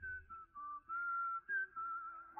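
Soft background score: a slow melody of held, whistle-like notes stepping up and down in pitch.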